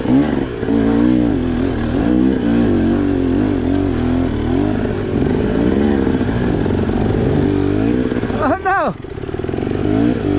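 KTM 300 two-stroke dirt bike engine at low revs, the throttle worked on and off so the pitch keeps wavering up and down while crawling over rough ground. About eight and a half seconds in, a quick sharp rev rises and falls, and the sound briefly drops.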